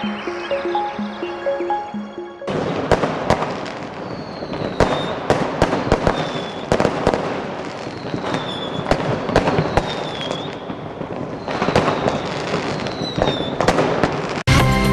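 A short jingle of repeated notes, then from about two and a half seconds in a continuous run of fireworks: crackling, many sharp bangs, and short whistles among them.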